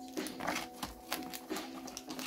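Foil booster packs rustling and tapping against each other in short, irregular bursts as a handful is shuffled and pushed into a cardboard display box, over a faint steady hum.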